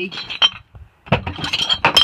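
Empty glass beer bottles clinking and knocking together on a pickup's cab floor: a few clinks at first, then a busy run of ringing clinks from about a second in.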